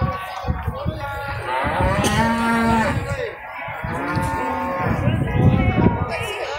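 Nelore cattle mooing in a pen: one long, steady moo about two seconds in, then a shorter one about four seconds in.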